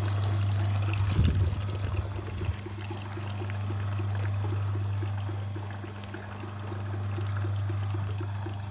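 Grape juice pouring from a stainless-steel grape press's spout into a plastic bucket, over the machine's steady low motor hum with a faint regular ticking about four times a second. A few knocks about a second in.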